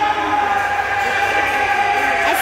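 The soundtrack of a projected highlight video playing through a hall's loudspeakers: a steady held tone with several fainter sustained tones above it.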